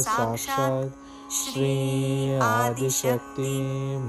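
A voice singing devotional Sanskrit mantras to a slow, gliding melody, with a short break about a second in and the words "namo namah" near the end.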